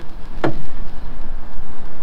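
A single short wooden knock about half a second in, a wooden batten set against the plywood hull, over steady background noise.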